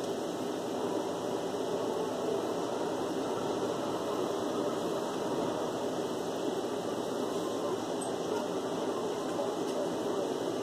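Steady air-conditioner noise, an even rush that does not change.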